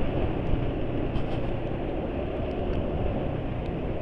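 Yamaha NMAX scooter's single-cylinder engine running at a steady cruise, mixed with road and wind noise while riding. The engine sounds somewhat rough, which the rider puts down to engine oil worn out by hard riding.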